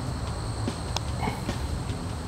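A putter striking a golf ball once, a single light click about a second in, over a low, steady outdoor rumble.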